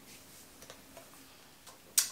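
Quiet room tone with a few faint, short clicks spread through it, and one sharp click right at the end.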